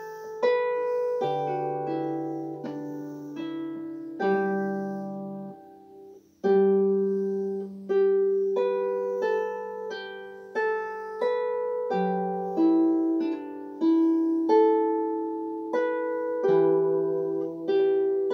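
Solo harp playing a slow air: single plucked melody notes ringing and fading over longer-held bass notes. There is a brief pause about six seconds in, followed by a fresh chord.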